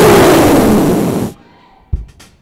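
A man's forceful, breathy shout blown straight into a handheld microphone: a loud rushing blast with a voice falling in pitch inside it, lasting just over a second and cutting off sharply.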